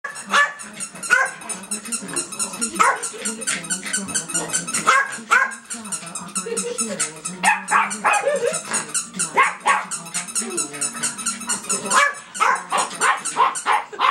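Small terriers barking over and over, several barks a second, worked up over a toy squeaker held out of their reach.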